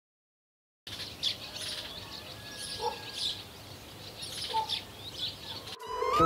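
Silence for about the first second, then songbirds chirping and twittering in quick, scattered calls over a faint outdoor background hiss.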